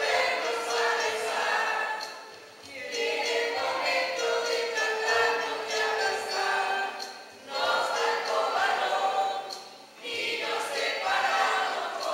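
A choir, mostly women's voices, singing a song in phrases, with brief breaks between phrases three times.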